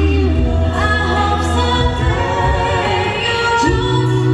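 Five-voice a cappella group singing live through an arena sound system: slow, held vocal chords over a deep sustained bass voice, with the harmony shifting every second or two.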